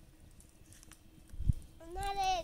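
A single dull thump about one and a half seconds in, then a high-pitched wavering call that begins near the end.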